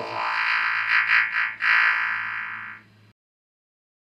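Electro music: a sustained, buzzy, distorted synthesizer tone over a steady low note. It cuts off abruptly about three seconds in.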